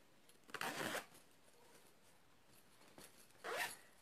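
A zipper on a fabric backpack pocket being pulled twice: a short rasp about half a second in and another near the end.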